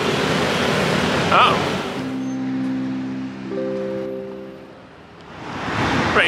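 Street traffic rushing past for about two seconds, then background music of a few sustained held notes that fades away about five seconds in.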